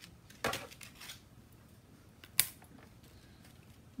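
Handling of a die-cutting setup: a short scrape about half a second in and one sharp click a little past two seconds as the magnetic plate and the metal leaf die are set in place.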